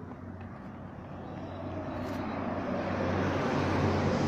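Street traffic noise: a motor vehicle's sound growing steadily louder over the last couple of seconds, as if approaching, over a low steady hum.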